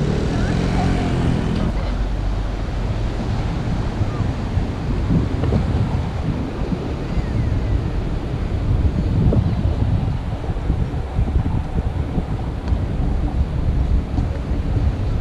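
Wind buffeting a GoPro Hero 5 Black's microphone as a steady low rumble, with ocean surf washing underneath.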